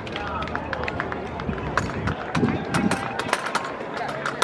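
Armed drill team working drill rifles: a rapid run of sharp slaps and clacks from hands striking the rifles and rifle butts hitting the asphalt, thickest in the second half as the line drops to a kneel. Voices carry underneath.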